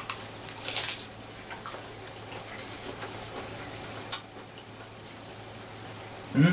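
A person chewing a mouthful of raw lettuce, with a loud crisp crunch within the first second and quieter chewing noises after. A sharp click comes about four seconds in, over a steady low hum.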